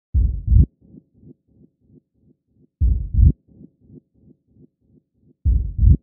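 Heartbeat sound effect opening a music track: a deep double thump, three times about two and a half seconds apart, with faint soft low pulses in between.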